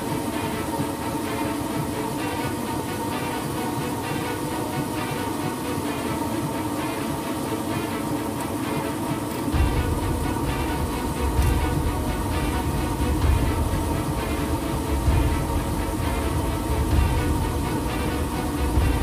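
Steady cockpit noise of an MD-82 airliner on approach in rain, with the windshield wipers running. About halfway through, a deep rumble comes in and stays, rising and falling.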